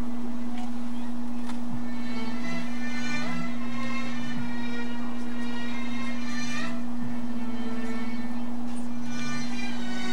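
Music with a steady drone held under shifting melody notes, accompanying a fire dance.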